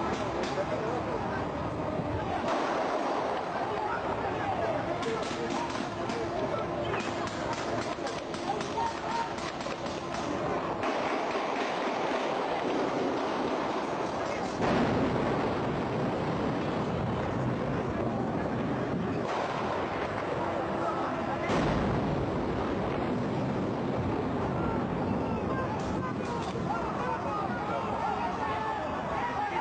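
Gunfire and blasts from a military assault, heard as sharp cracks and bangs over a continuous background of voices and noise, the loudest bangs about 15 and 22 seconds in.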